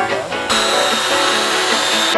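A cordless drill driving a screw into a timber beam, running about half a second in with a steady high whine over a rushing noise, mixed with background guitar music.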